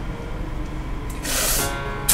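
Background film-score music with steady sustained tones; about a second in, a woman draws a sharp hissing breath through clenched teeth in pain.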